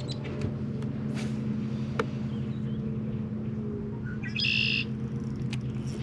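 A bird gives one short call about four and a half seconds in, over a steady low hum, with a single light click about two seconds in.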